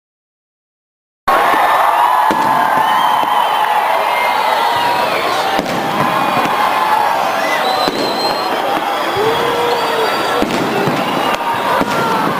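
Aerial fireworks going off, with a few sharp bangs, under the steady shouting and cheering of a large crowd of spectators. The sound cuts in suddenly about a second in, after silence.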